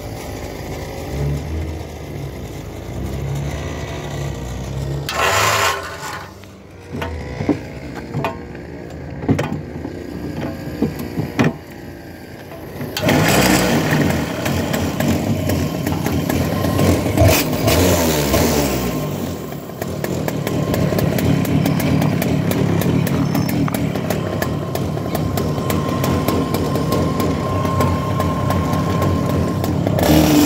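After some clicks and knocks, an IAME two-stroke kart engine fires up a little before halfway and runs loud, revving. Near two-thirds of the way in it settles into a steadier drone.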